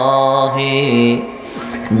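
A man's voice chanting the Arabic opening of a sermon into a microphone in long, drawn-out melodic notes. It breaks off for about half a second past the middle and resumes at the end.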